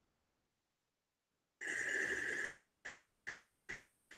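Air drawn through an electronic cigarette's tank and mouthpiece: a hissing draw with a whistle in it, about a second long and starting after a second and a half, then three short, sharp pulls about every half second.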